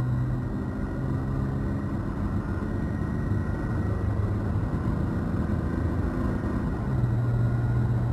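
Toyota Tacoma's 3.5-litre V6 heard from inside the cab, pulling the truck up through third gear on a fixed, steady throttle with road noise. The automatic transmission upshifts to fourth about seven seconds in, after holding the revs a little higher before the shift.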